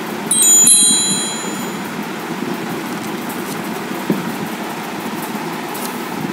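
A short electronic notification chime, a few high tones together lasting under a second, about half a second in: the phone's alert for an incoming live-chat comment. It sounds over a steady background hiss.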